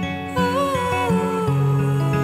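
A woman's voice holds a long wordless sung note over fingerpicked acoustic guitar. The note comes in shortly after the start, wavers, then slides slightly down.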